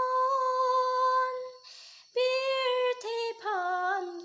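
A woman singing solo and unaccompanied, holding long steady notes. About halfway through she pauses to take an audible breath, then sings on with shorter notes that step down lower near the end.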